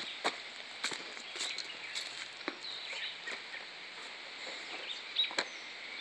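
Footsteps on dirt and stones, a few steps about half a second apart and one more near the end, over a steady outdoor background.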